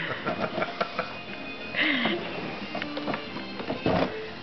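Light knocks and rattles of a plastic toy grill as a toddler crawls inside it, over music playing in the background, with a short voice sound about halfway through.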